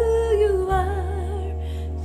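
Worship-band music: a woman holds a wavering sung note over sustained keyboard and bass. The low bass note changes about two-thirds of a second in.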